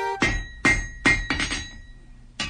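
Background music stops just after the start, followed by a quick run of about five sharp, glassy clinks, each ringing briefly.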